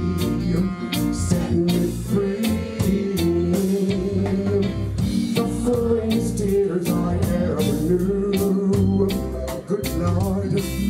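Live reggae band playing: a male singer sings the melody into a microphone over guitar, bass and drums keeping a steady beat.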